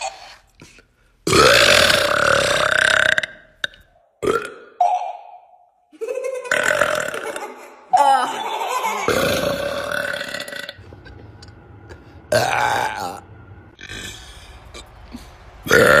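A woman belching loudly several times in a row, some long drawn-out burps of about two seconds and a few short ones, with short pauses between.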